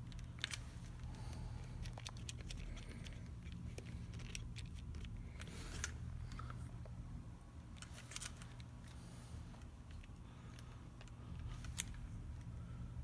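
Handling sounds from a Nikon DSLR fitted with a Helios-44M-4 lens on an M42 adapter: scattered sharp clicks and a short rustle about halfway, over a steady low hum.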